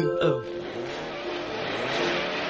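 Cartoon sound effect of cars driving off: a rushing noise that starts about half a second in and grows a little louder, over soft background music.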